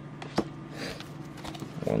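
Pokémon trading cards being handled: a light tap about half a second in, then soft rustling as the stack is gathered up.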